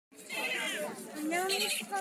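Bystanders' voices: two short wavering, fairly high-pitched utterances.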